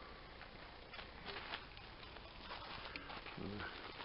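Faint, irregular footsteps on gravel, a few steps starting about a second in.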